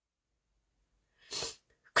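Silence, then a short, sharp intake of breath by a woman about a second and a half in, just before she speaks again.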